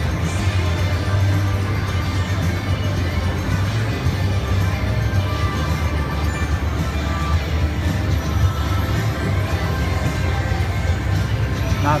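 Slot-machine music and electronic jingles on a casino floor, several tunes layered over a steady low hum.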